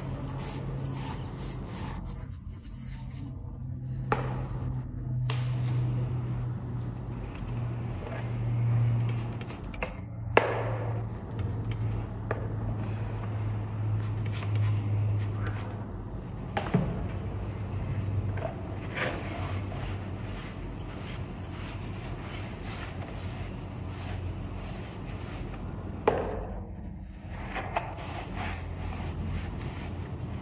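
Stainless steel pipe ends being scrubbed by hand with an abrasive scouring pad and wiped with a cloth: a steady rubbing scrape, broken by a few sharp clicks of handled parts. The scrubbing cleans the pipe mouths before welding.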